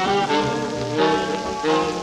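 Small-group swing jazz played back from a 1943 Commodore 78 rpm shellac record: an ensemble of held and moving pitched lines over the rhythm section, with the disc's hissy, crackly surface noise underneath.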